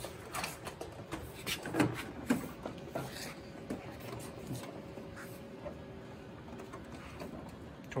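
Scattered light knocks and rubbing as a large-format printer is handled and lowered onto its stand, the hard plastic and metal parts bumping together. The handling is busiest in the first few seconds, then settles into a quieter stretch with a faint steady hum.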